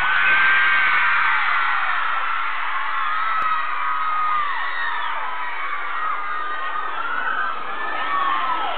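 Concert crowd screaming: many high-pitched voices holding long, overlapping screams. It is loudest about half a second in, then eases slightly.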